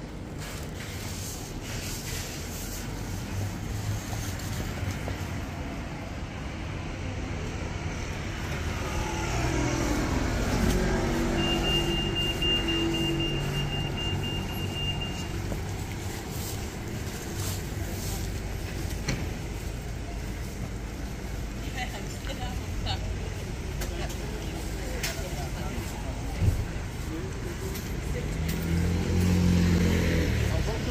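Road traffic on a busy high street: cars and vans passing, with a heavier engine going by about ten seconds in and another near the end. A steady high whine sounds for about four seconds during the first pass.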